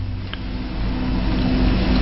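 A steady low rumble with a faint, even hum.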